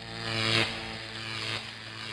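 Intro sound effect: a gritty, buzzing low tone at one steady pitch. It swells to its loudest about half a second in, then holds and begins to fade near the end.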